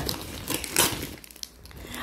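Clear plastic snack bag crinkling as it is picked up and handled, loudest a little under a second in, then quieter.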